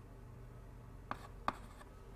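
Chalk writing on a blackboard: two sharp taps of the chalk against the board, about a second in and half a second apart.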